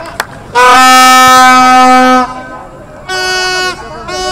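A horn blown in a long, loud, steady blast of about a second and a half, followed near the end by a shorter, higher-pitched blast.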